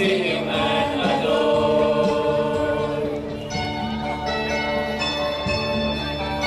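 Mixed choir of men and women singing a Christmas carol in harmony, with several voice parts at once. Long held chords come in the second half.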